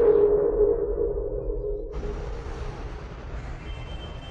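Film background score: a sustained, droning low tone that fades away over the first two seconds. About two seconds in, a steady even hiss of outdoor background ambience comes in.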